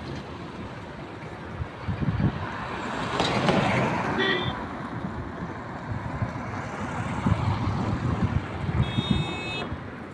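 Cars passing on a road, their tyre and engine noise swelling about three to four seconds in. There is a short horn toot just after four seconds and a longer horn honk near the end.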